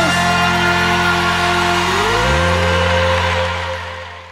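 Live band holding the final chord of a song, with a low note sliding up to a higher pitch about two seconds in, then the chord dying away near the end.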